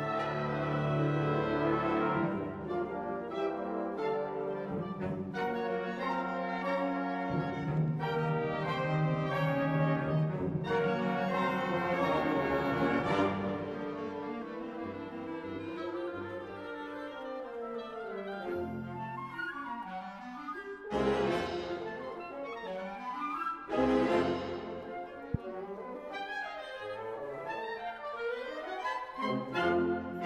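A concert band of woodwinds, brass and percussion playing live, with sustained low brass under moving woodwind and brass lines. Two sharp, loud accented chords with percussion hits come about two-thirds of the way through.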